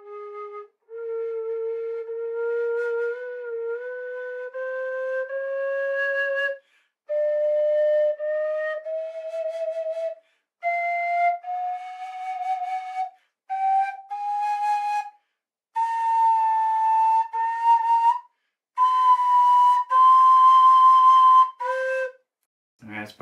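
Carbony carbon-fiber tin whistle in A-flat played as a slow run of separate held notes, climbing in small steps by half-holing and cross-fingering from its low register to over an octave higher, with a drop back to a lower note near the end. Some notes waver and bend slightly in pitch.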